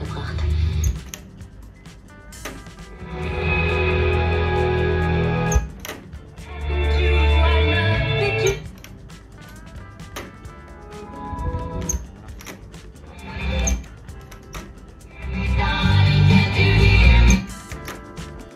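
SABA Freiburg Automatic 9 tube radio running its motorised automatic station search. Three times it settles on a station, and broadcast music plays loudly through its speakers for two to three seconds each time, cutting in and out abruptly. Between stations come quieter stretches with light clicks.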